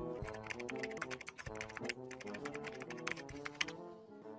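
Rapid clicking of computer keyboard keys being typed, stopping near the end, over background music with sustained notes.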